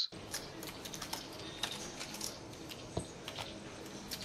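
Irregular light clicks of poker chips and playing cards being handled at a casino poker table, several a second, over low room noise.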